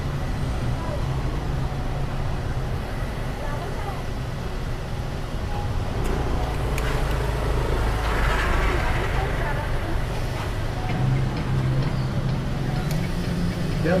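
Vehicle engine idling with a steady low hum amid traffic noise, with a deeper rumble swelling up about six seconds in and easing off around ten seconds.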